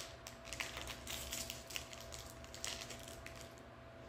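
Small clear plastic candy wrapper crinkling in quick, light clicks, dying away near the end.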